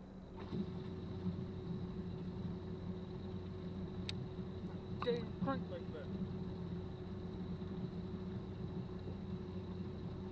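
Bow-mounted electric trolling motor humming steadily, switching on about half a second in. A sharp click comes about four seconds in and a short vocal exclamation about five seconds in.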